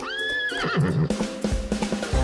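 A horse whinny, as a sound effect over upbeat music: a high held call that breaks into a shaking, falling tail within the first second. Drums come in with the music near the end.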